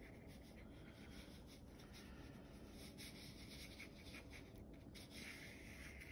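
Faint scratching and dabbing of an angled flat watercolor brush on paper, barely above near silence.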